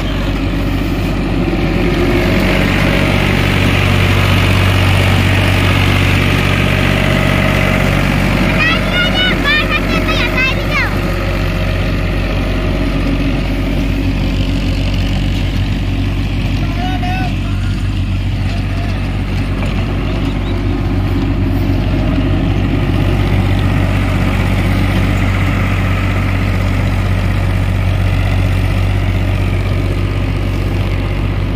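Powertrac Euro 55 tractor's diesel engine running steadily under load, driving a rotavator that churns the soil.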